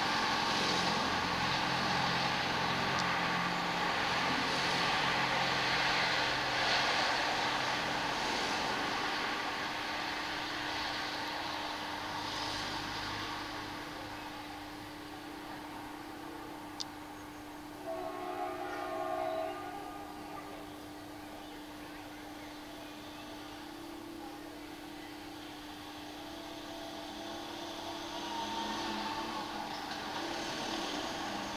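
A steady, distant rumbling noise with a held low tone, loudest for the first dozen seconds and then dying down. A few short, brief sounds come about 18 seconds in.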